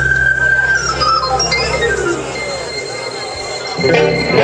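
Live band music: a long, high held note opens, then a run of notes steps downward, while the low bass fades away about halfway through.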